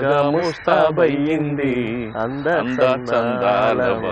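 A man's voice chanting a verse in a melodic, sing-song style, with held and bending notes and only brief breaks.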